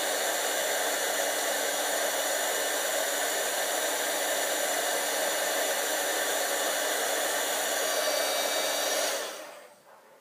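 Embossing heat tool blowing hot air steadily to melt white embossing powder on cardstock, a rush of air with a faint constant whine from its fan. About nine seconds in it is switched off and winds down over about a second.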